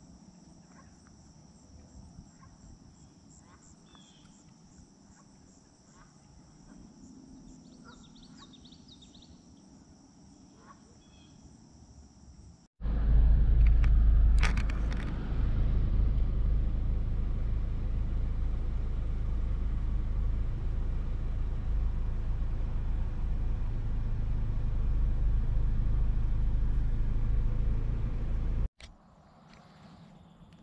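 Crickets chirping in a steady high drone with a few bird chirps. About 13 seconds in, this cuts abruptly to a much louder, steady low rumble of road noise heard inside a slowly moving car on a gravel road, which cuts off again near the end.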